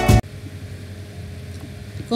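Background music with a beat cuts off abruptly just after the start, leaving a low, steady background hum.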